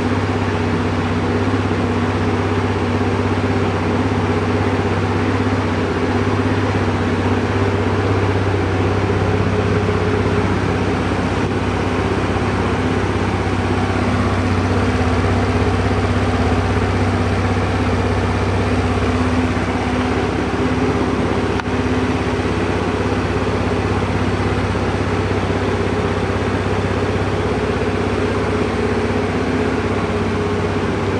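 Suzuki Let's 5 scooter's fuel-injected 49cc four-stroke single-cylinder engine idling steadily.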